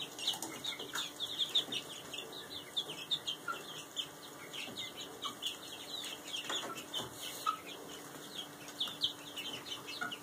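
A flock of young chickens (chicks) peeping: a constant run of short, high chirps, each falling in pitch, several a second.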